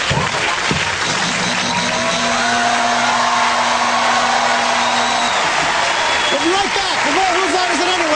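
Studio audience applauding and cheering, with voices calling out over it.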